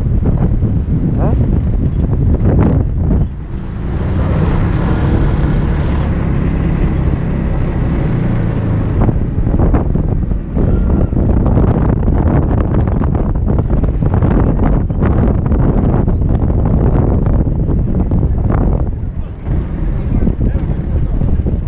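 Wind buffeting a helmet-mounted microphone while riding a Kymco Xciting 250 scooter, its single-cylinder engine running underneath. Many short thumps come in the second half.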